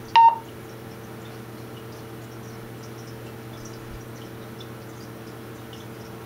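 Wouxun KG-816 VHF handheld radio giving a single short keypad beep as a key is pressed, just after the start. A steady low hum runs underneath.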